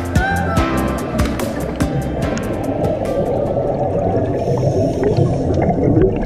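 Background music that fades out over the first two seconds or so, over a dense, crackling underwater rumble of bubbles from scuba divers' exhaled air.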